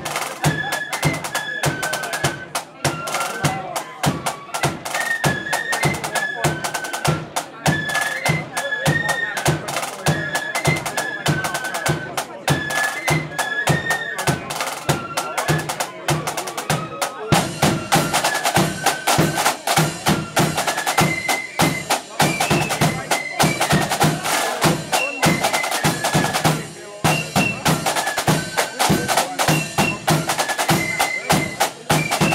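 Flute band playing a march: flutes carry the melody over rapid snare-drum beating and rolls. About seventeen seconds in the sound grows fuller and denser. Near the end there is a very brief break, and then the playing carries on.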